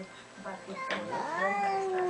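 A domestic cat's long, drawn-out yowl starting about halfway through, rising and then slowly sliding down in pitch. It is a hostile warning yowl in a standoff between two cats.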